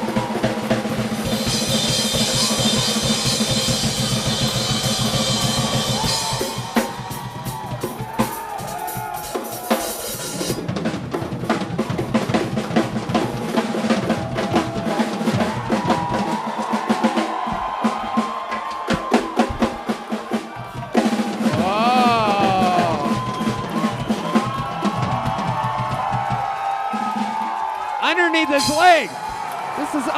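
Drum kit playing with a live band: dense drumming under steady held notes, then a few sliding pitches near the end.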